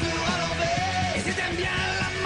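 A recorded song playing: a singer's voice carrying the melody over a full band accompaniment.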